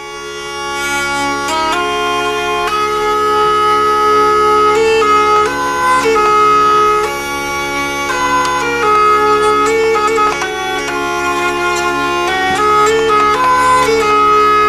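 Hurdy-gurdy (Ukrainian wheel lyre) playing: the turning wheel sounds a steady drone on its drone strings while a melody is stepped out on the keyed melody string. The sound swells up over the first couple of seconds.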